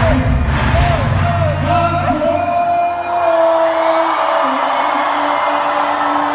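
Live concert music over the PA, with a heavy bass beat and a voice. About two seconds in, the beat cuts out, leaving a few held notes over a crowd that is cheering and yelling.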